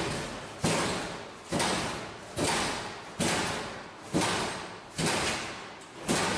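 Bank of metal lockers rocking back and forth and banging in a regular rhythm, about eight heavy bangs a little under a second apart, each echoing down a hard-walled hallway.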